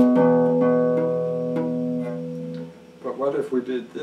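Electric guitar played clean: a few picked notes ring out over a sustained chord, then fade away about two and a half seconds in. A short burst of a man's voice follows near the end.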